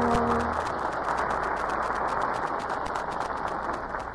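A held chord of closing music ends about half a second in, followed by steady studio-audience applause, heard on a narrow-band old broadcast recording.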